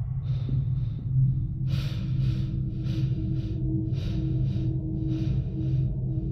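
A man breathing hard in short, hissy breaths, about one a second, over a low, steady droning music score.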